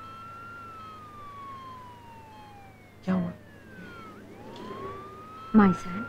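Ambulance siren wailing, its pitch slowly rising and falling about once every four seconds, heard from inside the ambulance.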